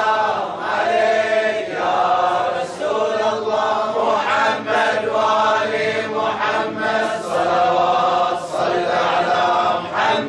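A man chanting an Arabic devotional poem into a microphone, with continuous melodic lines that are held and bend in pitch.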